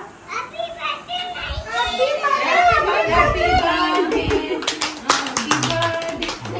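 Several voices, children's among them, talking over each other. Hand clapping starts about three-quarters of the way through and keeps going.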